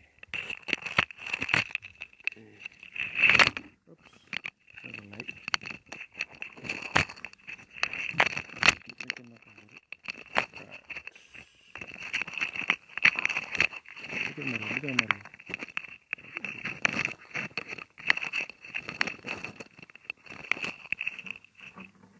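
Crackling and clicking on a wired earphone microphone, with short stretches of quiet speech in between.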